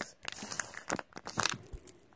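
Plastic toy packaging crinkling and rustling in short, irregular crackles as a squishy toy is slid out of it.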